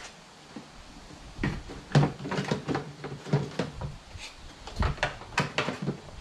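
Hard plastic knocks, clicks and rattles as a plastic sprayer tank and a plastic cover are handled on an ATV rack. The sounds start about a second and a half in, with the loudest knock soon after and a cluster of knocks near the end.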